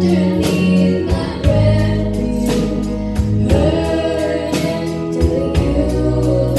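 Live band playing a slow song: a girl's sung lead melody with backing voices, over drums, guitars, bass and keyboard, with steady drum hits keeping the beat.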